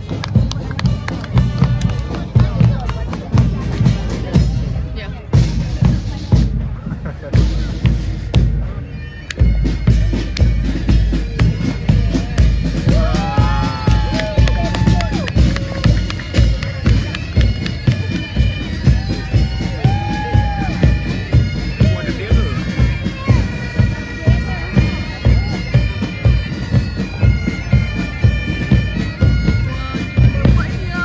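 Military pipe band marching past: bagpipes playing a march tune over bass drums beating about two times a second.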